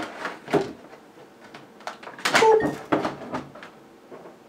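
Glass vodka bottle being handled, with light knocks and clacks and then a louder cluster of clicks and scrapes from about two to three and a half seconds in as its screw cap is twisted open.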